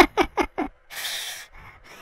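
A man laughing in a few short, quick bursts that trail off, followed by a breathy exhale lasting about half a second.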